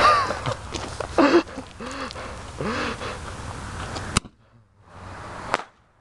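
A firework artillery shell lit on a person's chest: people yell out as the fuse sparks, then a single sharp crack about four seconds in, after which the sound drops almost to nothing; a second sharp click comes near the end.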